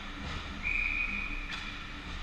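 Ice hockey referee's whistle blown once, a steady shrill blast just under a second long, stopping play. A sharp knock follows right after it over the rink's background noise.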